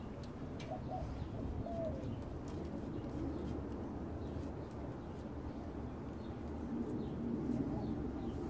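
A dove cooing in a few low phrases over steady low background noise, with faint light clicks.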